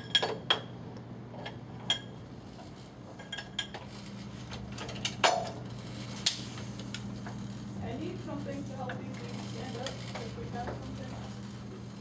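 Irregular metallic clinks and knocks from hand work on a platen letterpress, such as parts being handled and set, over a steady low hum; the press is not running.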